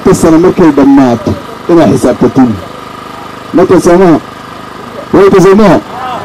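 A man speaking loudly in Somali into a microphone, in four short phrases separated by pauses.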